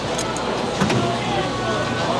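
Busy street-food stall background: people talking in the crowd, a few light clicks of utensils, and a low steady hum that starts about a second in.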